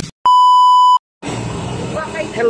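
A single steady, high-pitched electronic beep, like a censor bleep, about three quarters of a second long, between two short silences, followed by a low street background noise.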